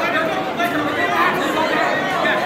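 Crowd chatter: many overlapping voices of spectators and coaches talking at once in a large gymnasium.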